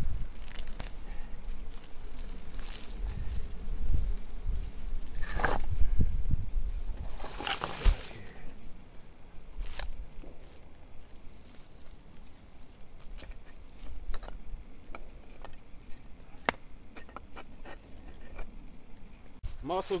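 Stones being shifted and set by hand into a firepit ring: scattered knocks of rock on rock, with a few short scrapes.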